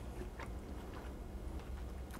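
Faint chewing of a mouthful of crusty homemade white bread, with a few soft crunches from the crisp crust over a low steady hum.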